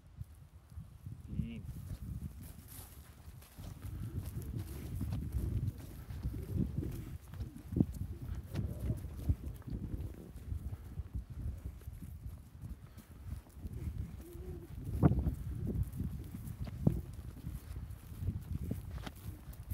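Footsteps on dry, loose, freshly sown topsoil, an uneven run of soft low thuds with a few sharper knocks.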